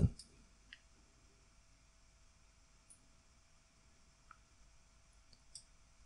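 Near silence: faint room tone with a few soft, scattered clicks of a computer mouse.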